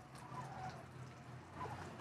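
Quiet background with a faint steady low hum.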